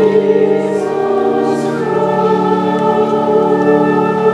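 Mixed church choir singing held chords, moving to new chords near the start and again about two seconds in.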